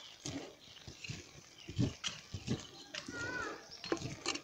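Wooden spoon stirring thick cooked cracked-grain porridge in a metal pot, with scattered scrapes and two dull knocks about two seconds in. A short high-pitched call is heard about three seconds in.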